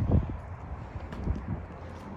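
Low wind rumble on the microphone outdoors, with a few faint ticks.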